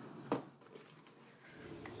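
Small cardboard box being opened by hand: one sharp snap about a third of a second in, then faint rustling of cardboard and packaging near the end.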